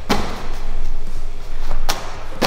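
Two sharp thuds of a medicine ball (wall ball), one right at the start and one near the end, as it is thrown up at the rig's target and comes back.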